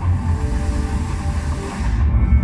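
Soundtrack music with a deep, steady low rumble beneath it.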